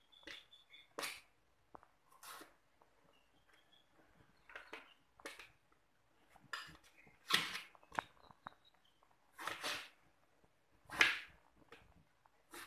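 A cleaver chopping through purple eggplant onto a plastic cutting board: a crisp cut about every one to two seconds, seven strokes in all.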